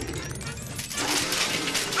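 A bicycle crashing, a continuous metallic clatter and rattle of jostling parts lasting about two seconds, as the bike breaks.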